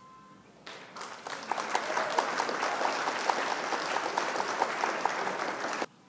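Applause sound effect: a crowd clapping that swells in about a second in, holds steady and cuts off abruptly just before the end, preceded by a brief faint beep.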